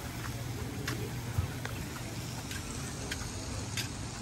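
Wind buffeting the microphone as a steady low rumble, with a few light, irregularly spaced taps of footsteps on a wooden boardwalk.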